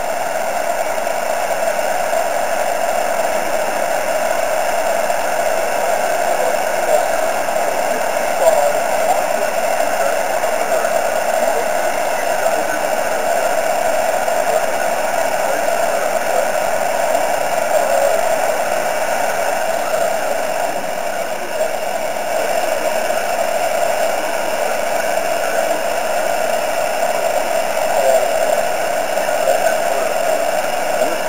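Steady hiss of an amateur radio moonbounce (EME) station's receiver, a narrow band of mid-pitched noise with faint wavering traces in it: the noise floor that a weak station's moon-reflected signal is being dug out of.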